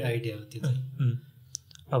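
A man's voice in short, hesitant fragments, with two brief clicks about three-quarters of the way through.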